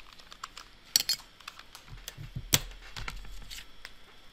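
A few irregular sharp clicks and taps, the loudest about a second in and again about two and a half seconds in.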